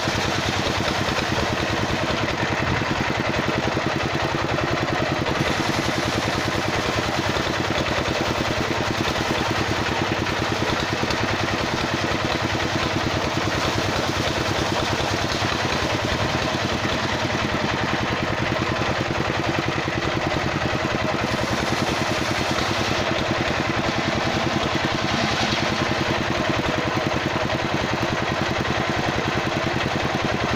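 Engine of a cart-mounted circular-saw rig running steadily while the blade rips a slab of kapok wood into boards. The saw's cutting hiss rises for a few seconds at a time over the engine's even beat.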